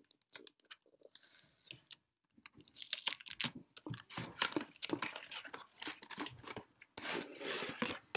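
Cardboard box and packaging crackling and rustling as the box is worked open and the ball inside is pulled out. A few faint clicks come first, then dense, irregular crackling from about two and a half seconds in.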